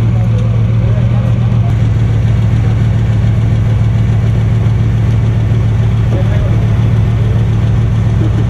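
Bugatti Veyron's W16 engine idling, a loud, steady low hum that does not change pitch.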